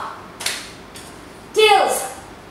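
A woman's voice between exercise moves: a short breathy exhale about half a second in, then a brief vocal sound near the end that falls in pitch.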